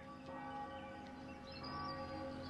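Bell tones ringing, several steady pitches sounding together and decaying, with fresh strikes at the start and about one and a half seconds in.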